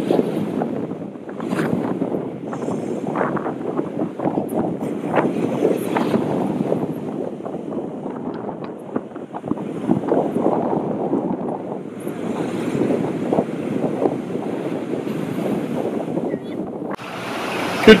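Ocean surf washing and breaking onto a sandy beach, a continuous rough rush with irregular surges, mixed with wind buffeting the microphone.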